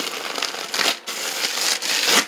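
Fingers scratching and rubbing across a crinkly plastic sheet, a rustling scratch in two stretches with a short break about halfway. It is a sound effect for something scratching at a door.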